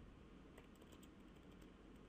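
Faint computer keyboard typing: a few soft, scattered key clicks over a low steady hiss.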